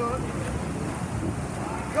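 Steady, echoing wash of noise in an indoor pool during a race: swimmers splashing freestyle and the hubbub of spectators.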